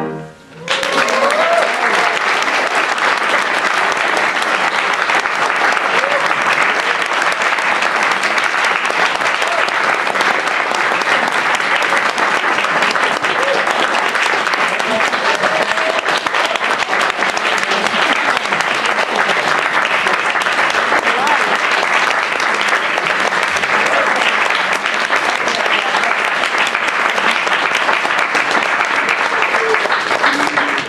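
Audience applauding steadily, starting about half a second in, just after the piano duet's last notes stop. A few voices call out among the clapping.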